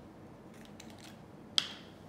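Small plastic hand-sanitizer bottle being handled, with a few faint rustles and clicks, then one sharp click about one and a half seconds in as its flip-top cap snaps open.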